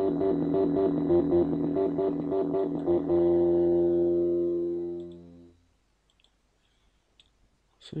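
d-lusion Rubberduck software bass synthesizer, a TB-303-style emulator, playing a loaded preset pattern: a rhythmic run of repeating synth notes for about three seconds, then one held sound that fades away over the next two seconds or so.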